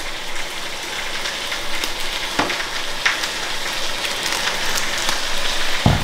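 Pork shoulder searing fat side down in a hot pan, a steady crackling sizzle. Two sharp knocks cut through it, one midway and one near the end.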